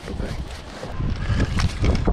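Wind buffeting the microphone, a low rumble that grows stronger about a second in.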